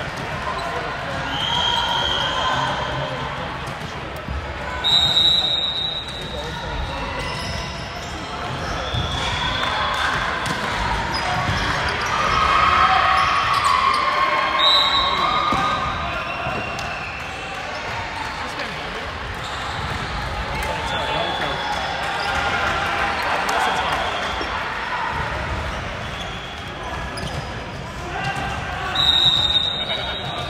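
Men's indoor volleyball in a large, echoing hall: players' voices and calls, sneakers squeaking on the wooden court and the ball being bounced and struck. Three short, shrill referee's whistle blasts come about five seconds in, about fifteen seconds in and near the end, marking the start and end of a rally and the next serve.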